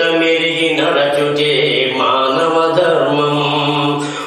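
A man singing a Telugu Christian devotional song in long, held notes.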